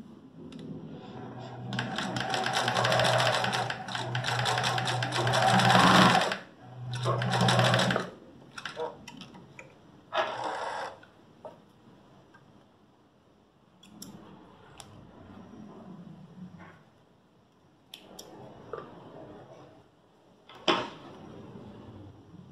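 Domestic electric sewing machine stitching in two runs: about four seconds, then a short second run of about a second, sewing a small tacking seam across the top of the pocket. After that come scattered light clicks and fabric handling as the threads are trimmed with thread snips.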